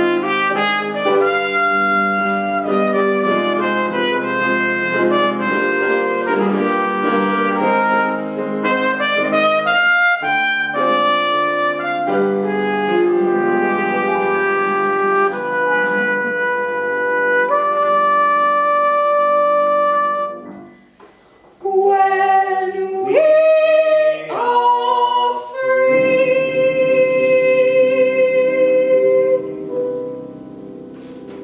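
Live brass music led by a trumpet, playing a tune with several instruments sounding together. The music drops out briefly about two-thirds through, returns with quick runs of changing notes, then long held notes near the end.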